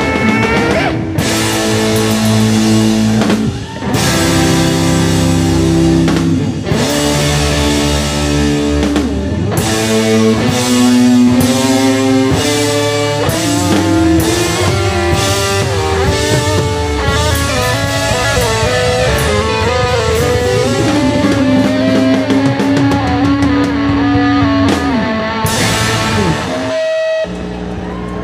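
A live rock band playing loud: distorted electric guitars, bass and a drum kit in an instrumental passage. The band stops together near the end as the song finishes.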